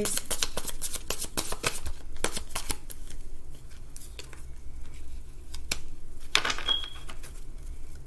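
A deck of tarot cards being shuffled by hand: a quick run of crisp card clicks for the first few seconds, then sparser single taps as a card is drawn and laid down on the wooden table.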